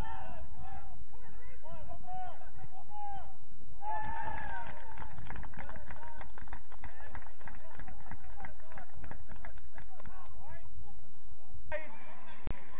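Voices shouting across a soccer pitch, heard over a steady low rumble on the field camera's microphone. The shouts are strongest in the first five seconds and then give way to a run of short knocks and scuffs. The sound changes abruptly near the end as the footage cuts to another recording.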